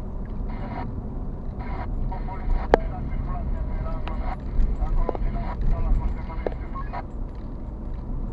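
Road and engine noise heard from inside a car driving along a city street, a steady low rumble with a few sharp clicks scattered through.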